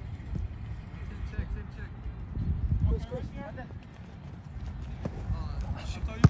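Distant shouts of soccer players calling to each other across the field, over a low rumble of wind on the microphone, with a ball kicked near the end.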